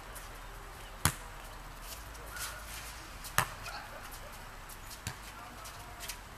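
A soccer ball being played on a hard tennis court: three sharp thuds of the ball being struck and bouncing. The first comes about a second in, the loudest a little after three seconds, and a softer one about five seconds in.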